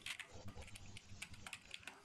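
Faint, irregular clicking of typing on a computer keyboard, several keystrokes a second.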